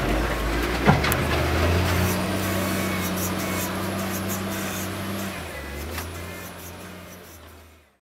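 A motor vehicle's engine running steadily at a low pitch, with a sharp knock about a second in and a lighter one near six seconds; the sound fades out near the end.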